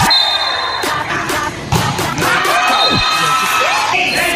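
Spectators shouting and cheering through a volleyball rally, with a few sharp smacks of the ball being hit near the start.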